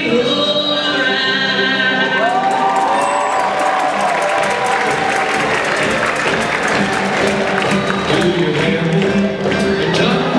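Live band music from acoustic guitars and hand drums, with a woman singing held, gliding notes in the first few seconds. From about the middle, audience applause and cheering rise over the music.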